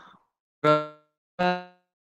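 Two short pitched tones about a second apart, each starting sharply and fading away within about half a second.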